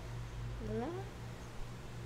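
A short vocal sound, once, about half a second in, rising in pitch, over a low steady hum.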